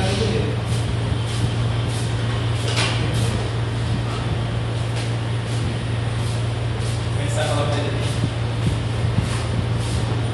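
Room ambience: a steady low hum under indistinct background voices, with brief patches of talk about three seconds in and again near the end.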